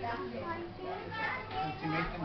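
Voices talking indistinctly over the low steady hum of a tram's interior.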